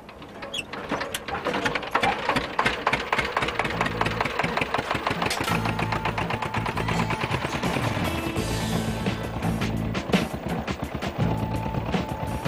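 Single-cylinder diesel engine of a two-wheeled walking tractor running, a rapid, even chugging of firing strokes that holds steady.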